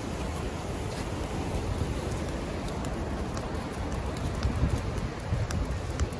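Steady rush of river water pouring over rapids, with wind gusting on the microphone in the second half.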